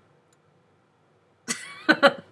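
Near silence, then about a second and a half in a woman lets out a sudden, short stifled laugh.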